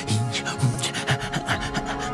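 TV channel ident soundtrack: held music tones under a quick run of dry, raspy scratching clicks.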